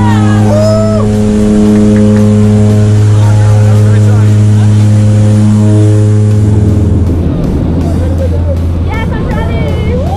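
Skydiving plane's engines and propellers droning steadily inside the cabin. About seven seconds in, the drone changes to a rougher, noisier sound at a lower pitch. Brief shouted voices can be heard near the start and near the end.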